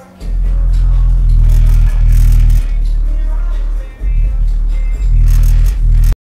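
A song played loud through a Logitech 2.1 computer speaker system, its subwoofer carrying heavy, sustained bass notes that dominate the sound. The bass drops out briefly twice, about two and a half and four seconds in.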